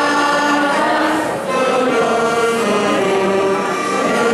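A group singing a traditional Catalan caramelles song in long held phrases, accompanied by two saxophones and a guitar, with a brief break between phrases about a second and a half in.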